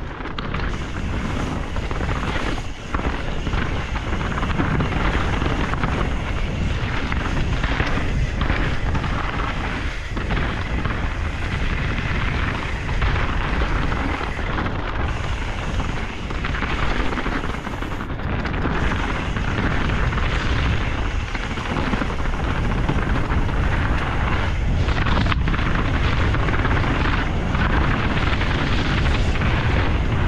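Canyon Strive enduro mountain bike descending a dirt and rocky trail at speed: a steady rush of wind on the microphone over tyre roar and the rattle of the bike. A few sharp knocks from wheels hitting rocks or roots, about three seconds in, around ten seconds and near twenty-five seconds.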